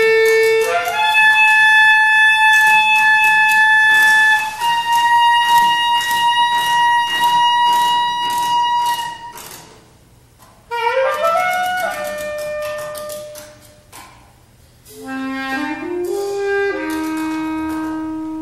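Free-improvised duet of a reed instrument and drum kit. The reed holds long, loud notes one after another, stepping up in pitch, breaks off briefly around the middle, then comes back with a quick rising run and, near the end, a low note that climbs in steps and is held. Under it the drums and cymbals are struck steadily with rod-bundle sticks.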